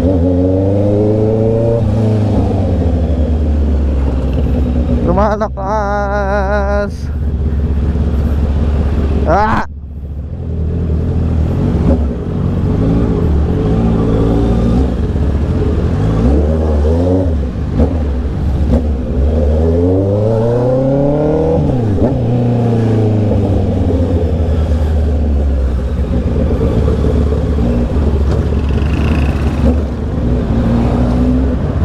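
Honda CB650R's inline-four engine heard from the rider's seat while riding in traffic, its pitch rising and falling over and over as it is revved and eased off through the gears. The throttle body and fuel injectors are freshly cleaned and the spark plugs new iridium ones. A brief wavering high tone sounds about five to seven seconds in.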